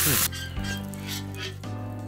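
Steady sizzling hiss with faint crackles from cooking over a wood campfire, under background music with sustained tones. A short, louder burst of hiss comes right at the start.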